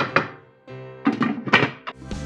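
Background music over a series of sharp knocks from a slotted wooden spoon striking the pan as the sauce is stirred: a couple of knocks at the start, a short lull, then a quicker run of knocks in the second half.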